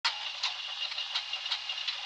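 Clock ticking about two and a half times a second over a steady hiss.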